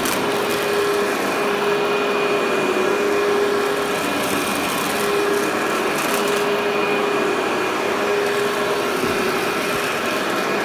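Workhorse upright vacuum running steadily while being pushed over low-level loop commercial carpet, its motor giving a constant whine over the rush of air.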